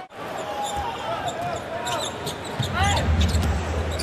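A basketball being dribbled on a hardwood court, with arena crowd noise throughout. A low crowd rumble swells about two-thirds of the way in.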